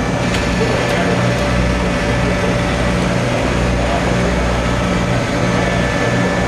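An engine idling steadily, its low rumble swelling and easing about once a second.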